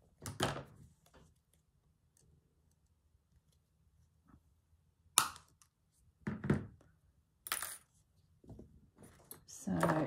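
Cutters snipping through craft wire for a wired toy's armature: a sharp metallic click about five seconds in and a second, shorter click about two seconds later, with the wire knocking and rattling lightly as it is handled.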